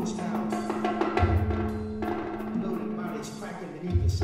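Live solo percussion: quick stick strokes on drums over a steady held low tone, with a deep drum boom about a second in.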